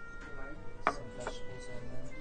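A small ceramic bowl set down on a wooden table, with one sharp knock about a second in and a few lighter taps, over steady background music.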